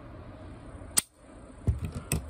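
One sharp click about a second in, then a couple of soft knocks near the end: handling of a 1 kg trigger-weight test weight hooked on a sport pistol's trigger.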